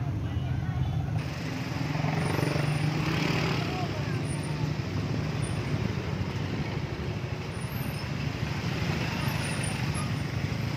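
Road traffic of many motorbikes and a vehicle or two running and passing at close range, a steady mixed engine noise with people's voices among it.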